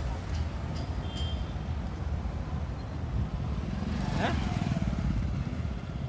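Road traffic of motorcycles and cars passing on a city street, a steady low engine rumble that grows a little louder in the middle.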